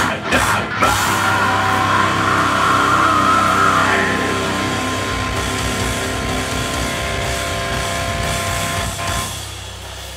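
A heavy metal band playing live, with distorted electric guitars, bass and drum kit. A few hard hits in the first second give way to a long held chord that drops away near the end.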